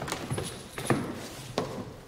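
Footsteps on a hard floor: a few separate sharp heel strikes as a man walks slowly across the room.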